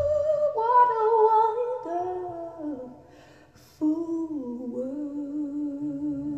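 Wordless humming of a slow song melody, held notes with vibrato that break off briefly about three seconds in, then return with a falling note that is held on. Heard as playback over hi-fi loudspeakers in a small room.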